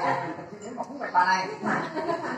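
Several people talking around a shared meal, with overlapping conversational voices.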